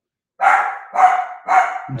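A dog barking three times in quick succession, about half a second apart.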